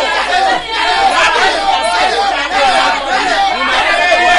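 Speech only: a man praying aloud in a fast, unbroken stream.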